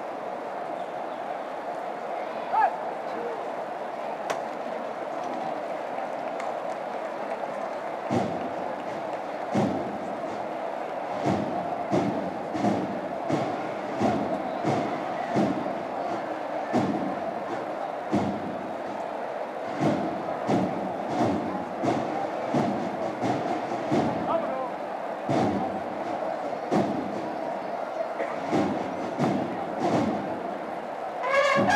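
A metal llamador on the front of a Holy Week paso struck once with a ringing knock, over a steady crowd murmur. From about a quarter of the way in, a regular run of dull thumps follows, a little more than one a second.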